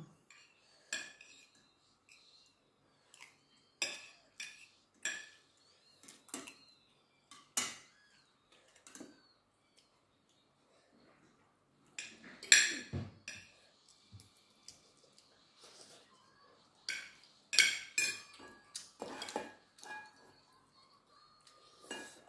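Spoons and forks clinking and scraping on plates as two people eat rice, in irregular separate clicks with short gaps. The clinks cluster more densely around the middle and toward the end.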